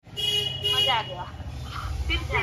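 Voices of people on a group video call coming through a phone's speaker over a steady low hum, with two short steady tones like beeps in the first second.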